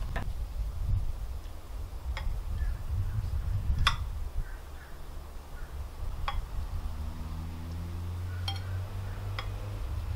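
A serving spoon clinking against glass about six times, scattered, as cocktail sauce is stirred in a glass bowl and spooned into stemmed glasses, over a steady low rumble.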